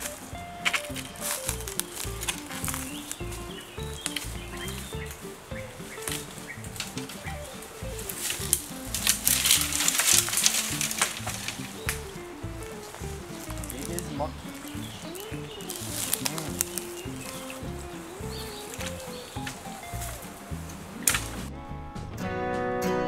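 Footsteps and body pushing through dry twigs, branches and undergrowth on a riverbank, with a run of many small clicks and rustles. This grows into louder rustling and splashing for a few seconds around the middle as a person in a wetsuit wades into the river. A faint voice talks underneath, and guitar music comes in right at the end.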